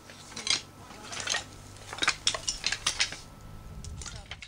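Loose slate pieces clinking and knocking against each other underfoot as people shift on a slate scree slope: a string of short, sharp clinks, a few early on and several close together in the second half.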